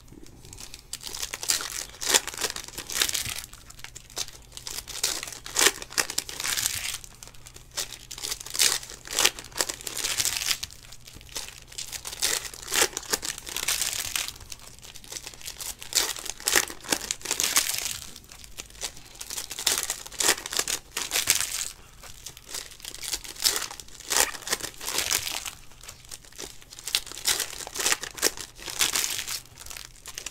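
Foil trading-card pack wrappers (Panini Donruss Optic hobby packs) being torn open and crinkled by hand, the foil crackling in repeated irregular bursts throughout.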